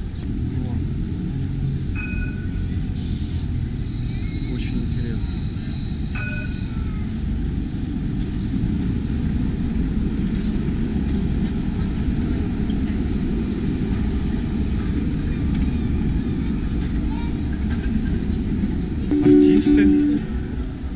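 Street noise as a Bordeaux tram runs past close by: a low steady rumble, with a brief high hiss about three seconds in and two short high tones. Near the end an acoustic guitar starts playing.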